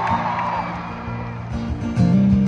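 Amplified acoustic guitar played live through an arena sound system, with low notes held and swelling again in the second half. A few high crowd whoops trail off at the start.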